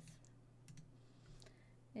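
A few faint clicks spread across two seconds: keys being entered on a computer calculator program, over a low steady hum.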